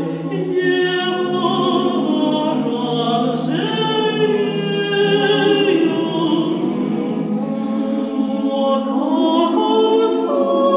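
Mixed chamber choir singing a cappella: sustained chords in several voice parts, moving to new notes about every second.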